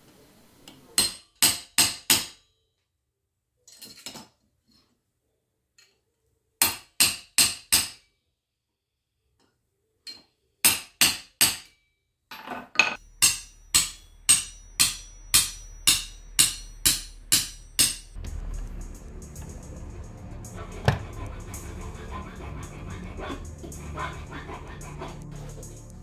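Hand hammer striking a steel punch driven into the saw cut of a silver bar held in locking pliers, prying the cut open to form a seamless ring. Sharp metal-on-metal blows come in groups of about four with pauses, then a faster, steadier run of about two blows a second that stops about 18 seconds in, after which background music plays.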